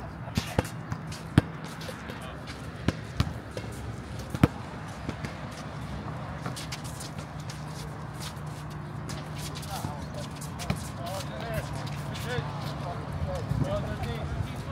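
A basketball bouncing on an outdoor hard court, a few sharp, irregular bounces mostly in the first five seconds, under players' distant voices calling out.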